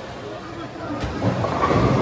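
Bowling ball rolling down the lane, a low rumble that grows louder over the second half, with a sharp click about a second in.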